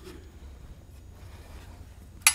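Faint scratching of a hex key turning a bolt on a metal bike-rack spine as the bolts are tightened down, over a low steady room hum.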